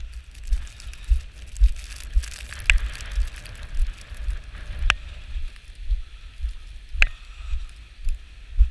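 Footsteps through deep powder snow, low thuds about twice a second, with gusty wind on the microphone. Three sharp clicks come about two seconds apart.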